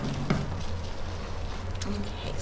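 Scissors picked up off a tabletop with a brief click at the start, over a steady low electrical hum.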